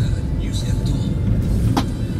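Steady low road-and-engine rumble inside a moving car, with a radio broadcast playing music and faint voice over it. A brief swishing sound effect comes near the end.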